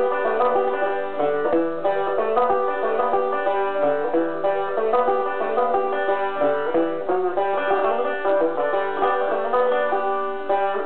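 Banjo played solo: a steady, unbroken run of plucked notes.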